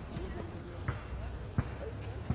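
A basketball bouncing on a court: two short thuds about 0.7 s apart in the second half.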